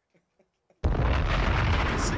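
Explosion sound effect: a loud boom that starts suddenly just under a second in and dies away slowly.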